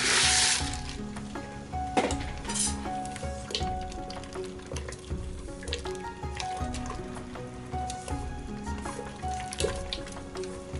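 Background music with a steady beat throughout. In the first second there is a loud hissing splash as rice noodles are tipped into a pot of hot water, followed by a few sharp clicks of wooden chopsticks against the steel pot as the noodles are stirred.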